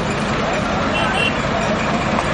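Steady road and vehicle noise on an expressway, with people talking in the background.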